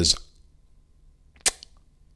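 One short, sharp click about one and a half seconds in, with a fainter tick just after it, during a pause in a man's speech.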